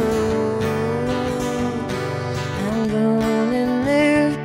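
A woman singing long held notes over a strummed acoustic guitar, a solo singer-songwriter performance.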